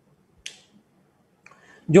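A pause in a man's speech with one short, sharp click about half a second in, then his voice starts again just before the end.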